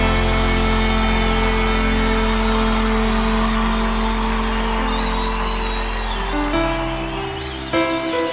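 Gospel worship band music with no singing: a held chord over a sustained bass slowly fading, with new soft notes coming in about six and a half seconds in.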